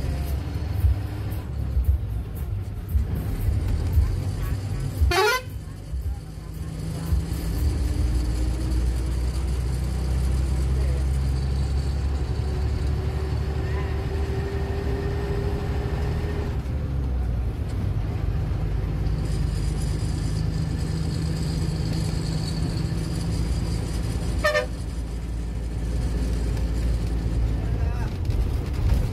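A bus engine running, heard from inside the driver's cabin, with a faint whine that rises as the bus picks up speed. The horn sounds with a quick rising sweep about five seconds in and again near the end.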